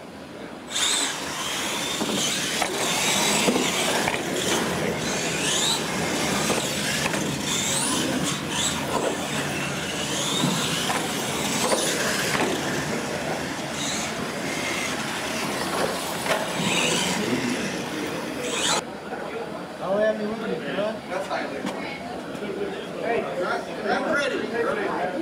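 Radio-controlled monster trucks racing, their motors whining up and down in pitch over crowd chatter. The race sound cuts off suddenly about three-quarters of the way through, leaving only voices.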